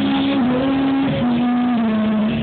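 A male voice sings karaoke through a microphone and PA speakers over a backing track, holding long, steady notes that step down slightly in pitch.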